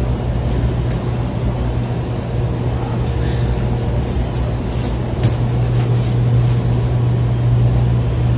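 Commercial tumble dryer running with a steady low hum as soft toys tumble in its drum, with a few light clicks about five seconds in.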